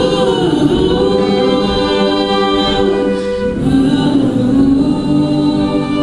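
A woman singing live to her own acoustic guitar: two long held notes, the second a little lower, coming in about three and a half seconds in.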